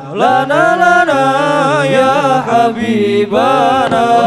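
Young men's voices singing Islamic sholawat together through microphones and a PA, in a gliding, ornamented chant. The voices break off briefly at the very start, then the next sung phrase begins.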